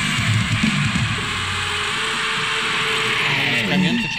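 Heavy metal music with distorted electric guitars. The drumming drops out about halfway, leaving a held guitar wash, and a falling pitch slide comes just before the end.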